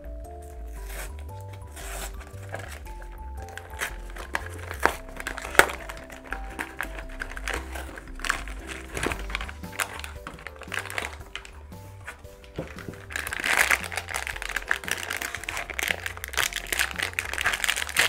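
Cardboard blind box being opened, then its foil bag crinkling as it is pulled out and torn open. The crinkling is loudest in the last few seconds, and light background music plays throughout.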